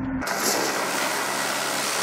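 Steady rush of a water hose spraying onto octopus traps, washing off the fouling that builds up while the traps sit on the seabed for a month. It starts abruptly just after the narration and runs on evenly.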